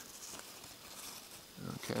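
Faint, steady outdoor background hiss with no distinct event, followed near the end by a man's short spoken word.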